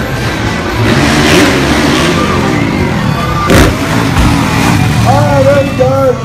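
Dirt bike engine revving up and down, with one sharp bang about halfway through.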